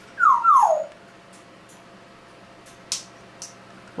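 African grey parrot giving two quick falling whine-like calls, like a dog's whimper, in the first second. A short sharp click follows about three seconds in.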